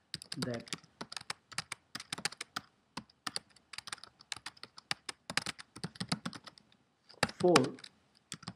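Typing on a computer keyboard: rapid, irregular key clicks with a short pause near the end.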